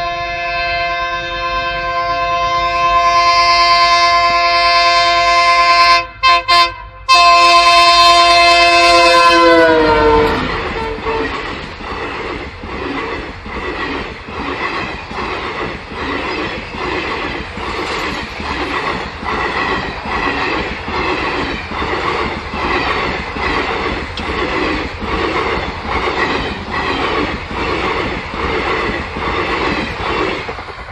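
A train horn sounds long and steady for about ten seconds, broken briefly twice, and drops in pitch as it ends. Then railcar wheels click over the rail joints in a steady rhythm of about one beat a second as a train rolls past.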